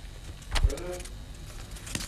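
Newspaper being handled on a table: a soft thump about half a second in, followed by a short murmur from a man's voice, with light paper rustles and clicks.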